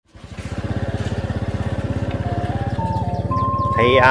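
Small motorbike engine running at an even, low pulsing beat of about ten to twelve firings a second.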